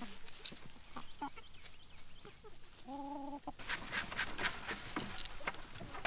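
A flock of free-range chickens clucking, with one longer, drawn-out hen call about three seconds in.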